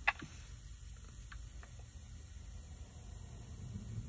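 A single sharp click just after the start, then a few faint ticks over a steady low rumble.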